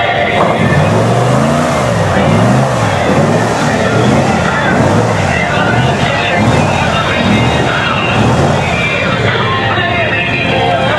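Airboat engine and propeller revving up and down over and over as the throttle is worked to move and turn the boat on a ramp.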